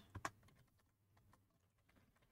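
A few faint computer keyboard key clicks in the first half-second, then near silence.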